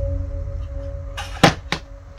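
Background music with a steady droning tone fading out, then two short sharp sounds about a third of a second apart near the end, the first the louder.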